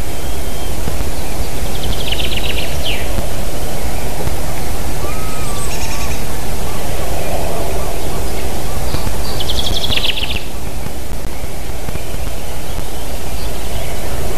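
Common chaffinch singing two song phrases, about two seconds and nine and a half seconds in, each a quick trill falling in pitch. Both come over a steady low background rumble.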